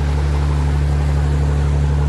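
A ferry's engine running under way with a steady low drone, over a constant rush of water and wind.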